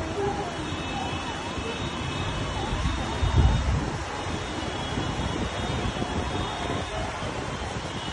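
Steady noise of rain and wind, with a low gust buffeting the microphone about three and a half seconds in.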